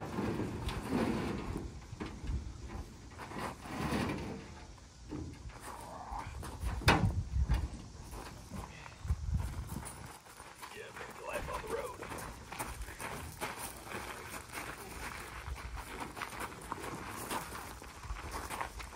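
Footsteps crunching on gravel as several people carry a pickup truck bed, with low indistinct voices and one sharp knock about seven seconds in.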